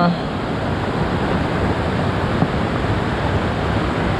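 Surf breaking and washing up over a stony, pebbly shore, a steady rush of waves.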